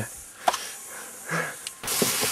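Mostly quiet, with a single click about half a second in. Near the end a hand starts mixing wet flour-and-water dough in a stainless steel pot, a steady stirring noise.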